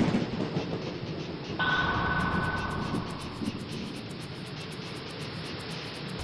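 Produced intro music and sound effects for a logo animation: a sudden hit at the start, then a held high tone about a second and a half in. A fast, even ticking rhythm over a low rumbling bed carries on after that.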